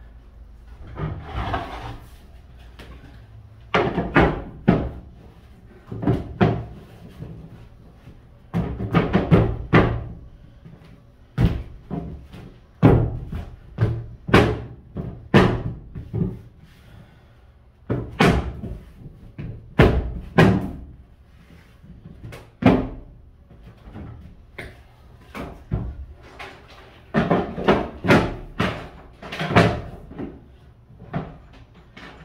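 Loose floor panels thumping and knocking at irregular intervals as they are set into place and stepped on, some in quick pairs and clusters.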